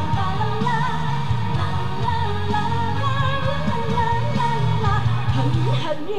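Live Chinese pop ballad played over a stage PA: a backing track with a steady bass line under a wavering lead melody and a female singer's voice. Near the end the bass drops out as the song draws to its close.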